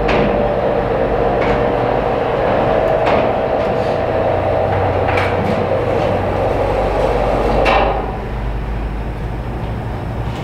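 Motorised projection screen unrolling: a steady motor hum that stops about eight seconds in, with a few sharp clicks along the way.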